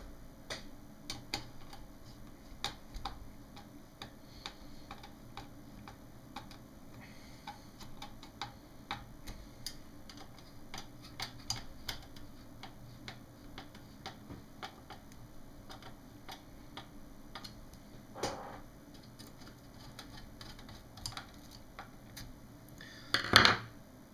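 Screwdriver tightening small screws into a monitor's sheet-metal shield: a string of small, irregular clicks and ticks, with a louder clack shortly before the end.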